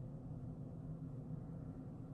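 Quiet room tone: a faint, steady low hum with no distinct sound events.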